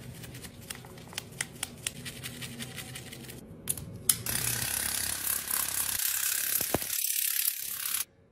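A stiff brush scrubbing a soapy compact case, scratchy strokes with many sharp clicks. A few louder clicks follow as a nozzle is fitted to a handheld water flosser. Then comes a loud, steady hiss of water spraying.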